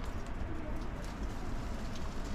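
A dove cooing over a steady low rumble.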